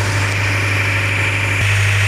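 A steady, low machine drone, like a motor or engine running at a constant idle, with a faint high whine above it. There is a small break in it about one and a half seconds in, where the picture cuts.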